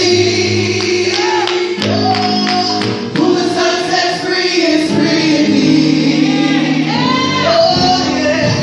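Gospel worship team singing into microphones, a man's voice together with several women's voices in harmony, holding long sustained notes.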